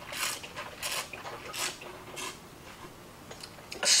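A wine taster's short hissing intakes of air, four or five in quick succession about one every 0.7 s.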